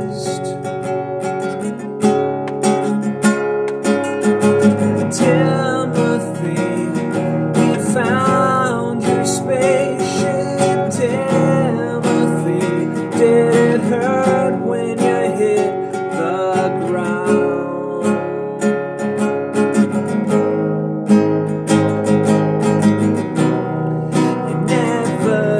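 Nylon-string classical guitar being strummed and picked continuously.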